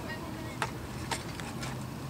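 A few short taps and rustles from a cardboard crayon box being handled, the loudest about half a second in.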